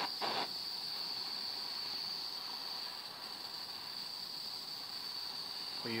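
Blowtorch flame hissing steadily, with a steady high-pitched whine underneath.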